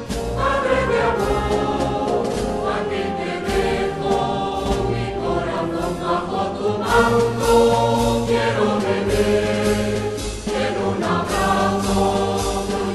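Spanish wind band (banda de música) playing a Holy Week processional march: full, sustained brass and woodwind chords with occasional drum strokes.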